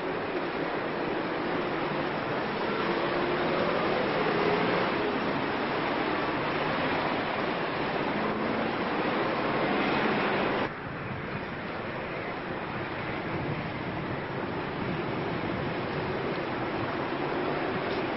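Heavy city street traffic: a steady wash of many car engines and tyres, with faint engine notes rising and falling as vehicles move off. About ten and a half seconds in the sound changes suddenly, becoming quieter and duller.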